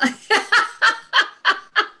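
A woman laughing heartily: a steady run of about seven short 'ha' pulses, roughly three a second.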